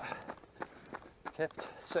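A runner's footsteps on a tarmac road, at about three strides a second, with his breathing between sentences.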